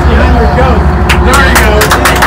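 Several people talking at once over a steady low hum, with a few sharp knocks from about a second in.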